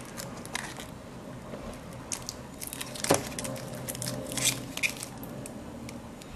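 Clear plastic bag crinkling and crackling around a small plastic toy accessory as it is handled, with scattered light clicks and one sharper click about three seconds in.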